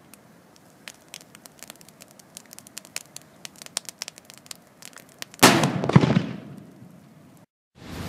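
Cobra 6 firecracker's lit fuse crackling and sputtering with many sharp ticks, then a single very loud bang about five and a half seconds in that dies away over a second or so.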